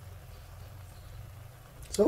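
Faint, steady low rumble with a light hiss from a pan of noodles simmering over a lit gas-stove burner.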